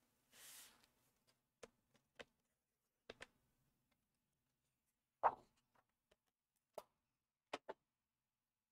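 Faint handling of cardstock on a paper trimmer while a thin strip is cut: a brief soft swish of paper near the start, then scattered light clicks and taps, the loudest a little over five seconds in.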